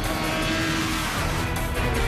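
Green Kawasaki sport bike's engine running hard as it corners on a race track, its note climbing again near the end, under background music.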